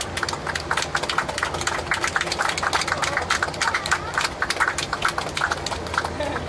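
Cabin noise of a Boeing 747-8I rolling along the runway after landing, spoilers up: a steady low drone from the engines under a dense run of sharp clicks and rattles.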